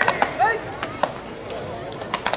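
A few scattered, irregular hand claps, sharp single claps bunched in the first second, as players bow off the field.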